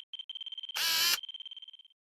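Electronic sound-effect sting: a high, steady beep that stutters rapidly, broken near the middle by a loud, short burst of static-like noise, then dying away just before the end.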